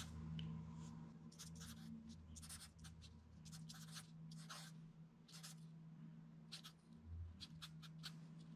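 BIC Marking Pocket felt-tip marker writing on a paper sticky note on a wooden table: faint, short scratchy strokes in an irregular run as the letters are drawn.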